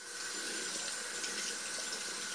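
Water running steadily from a single-lever bathroom tap onto hands being washed at the sink, an even hiss.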